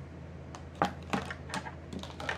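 Hard plastic ice cube tray pieces clicking and tapping as they are handled and fitted together, about half a dozen light clicks spread over two seconds.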